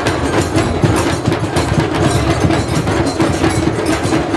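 An audience clapping continuously, a dense patter of claps, over steady background music.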